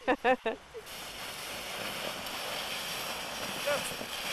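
A laugh and a couple of words, then a steady rushing hiss of a plastic sled sliding down packed snow that grows a little louder as it comes near.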